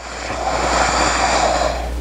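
A woman's long, deep breath, loud and rushing on a clip-on microphone, building gradually.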